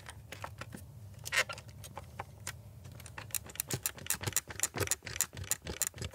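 Plastic trim around the round central display of a 2021 Mini Cooper SE clicking and creaking as a hand grips and rocks it. The irregular clicks come faster from about halfway through. This is loose-fitting interior trim giving way under the hand.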